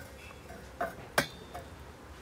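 Two short clicks about a third of a second apart, the second sharper and followed by a brief ringing tone, over a faint steady background.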